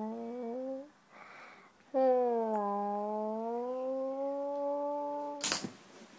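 A voice humming two long held notes with a breath between them, the second dipping and then slowly rising in pitch. A sudden thump comes near the end.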